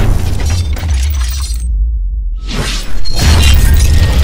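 Cinematic outro sound design over music: a heavy bass rumble with glass-shatter-like effects. The treble drops out briefly partway through, then sweeps back in to a loud hit about three seconds in.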